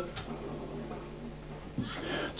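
A pause in a man's speech filled with steady low electrical hum and room hiss, with a short vocal sound near the end as speech resumes.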